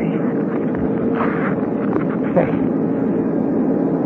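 Steady drone of airliner engines as heard inside the passenger cabin, a radio-drama sound effect, with a faint even hum running through it. A man's voice cuts in briefly past the halfway point.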